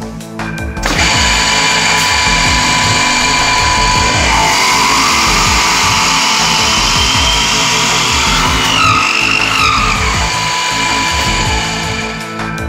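GANNOMAT Master multi-spindle drill head boring a row of holes into a solid-wood block. It starts about a second in with a loud, steady whine of spinning bits cutting wood, wavers in pitch twice, and dies away near the end. Background music plays underneath.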